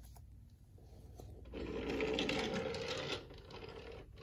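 A small battery-powered toy train motor whirring as the engine runs along plastic track, for about two seconds in the middle.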